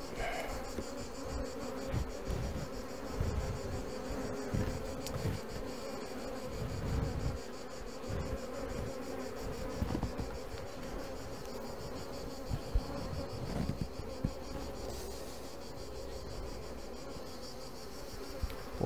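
Honeybees buzzing in a steady hum over an opened hive as its frames are lifted out and handled, with scattered low thumps.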